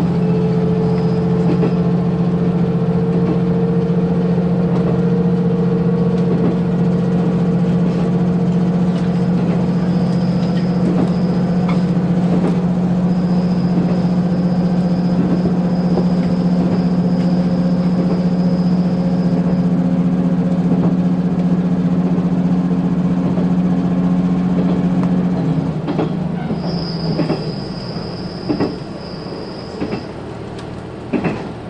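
Diesel engine of a KiHa 185 series railcar, heard from inside the passenger car, running under power with a steady low drone. About 26 seconds in the engine drops back and the sound gets quieter. A thin high wheel squeal comes and goes and is loudest near the end, along with a few clicks from the rail joints.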